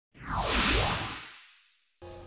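A whoosh sound effect for an animated logo intro, swelling up and fading away over about a second and a half.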